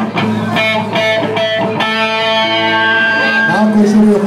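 Electric guitar played through an amplifier, picking single notes between songs, one held for over a second and then sliding down in pitch near the end, over a steady low amplifier hum.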